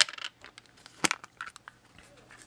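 White plastic ink-blending daubers and their snap-on caps handled and pulled apart. A sharp plastic click right at the start, another about a second in, then a few light taps.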